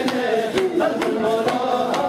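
Male voices chanting together in Sufi dhikr, a wavering sung melody over a sharp rhythmic beat about twice a second.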